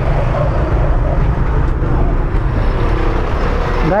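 Auto rickshaw's single-cylinder engine idling: a steady, loud low rumble with a fast, even pulse.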